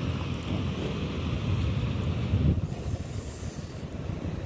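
Street ambience: wind rumbling on the microphone and a car driving slowly along the street, with a brief higher hiss near the end.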